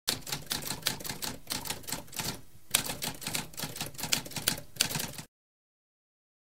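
Typewriter keys clacking in a rapid, uneven run of strokes, with a brief pause about halfway. The typing stops abruptly just after five seconds.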